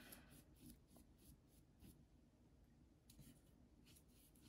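Near silence with faint swishes of a wide watercolour brush stroking across paper, a few near the start and a few more after about three seconds.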